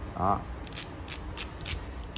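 Multi-bit ratcheting screwdriver's metal head clicking as it is worked by hand: four light, sharp clicks about a third of a second apart.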